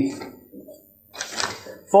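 The end of a man's spoken word, then a short rustle of a sheet of paper handled in the hand a little over a second in.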